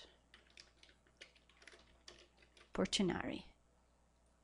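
Typing on a computer keyboard: a quick run of light key clicks for the first two and a half seconds, with a short burst of voice about three seconds in.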